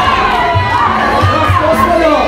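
Ringside crowd, many of them young, shouting and cheering at a Muay Thai bout, with many voices overlapping. Background music with a low repeating beat runs underneath.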